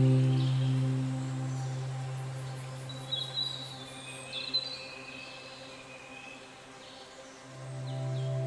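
Ambient new-age music: a sustained low drone with held tones above it fades away over several seconds and swells back in near the end. A few short bird chirps sound in the middle.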